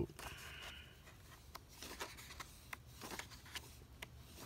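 Quiet paper handling: the pages of a paper booklet being turned, with a short swish of paper near the start and a few light ticks and rustles after it.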